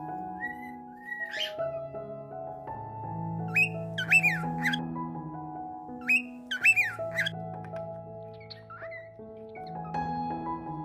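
Background music of held piano-like chords, over which a cockatiel gives short rising whistled calls, loudest in two quick runs of three near the middle and later, with fainter calls at the start and near the end.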